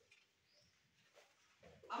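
Near silence: room tone in a hall, with a few faint, brief sounds.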